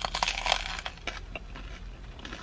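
Crunching bites into a toasted bacon, Gouda and egg breakfast sandwich with a crisp, crusty roll: a quick run of crackly crunches in the first second or so, then softer chewing.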